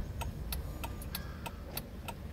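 Car turn-signal flasher ticking steadily, about three clicks a second, over the low rumble of the idling engine.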